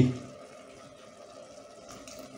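Mushroom cooking liquid poured faintly from a ladle back into a stainless-steel stockpot of cooked-down mushrooms.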